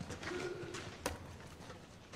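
A man's low grunt, a short steady hummed tone, followed by a single sharp click about a second in.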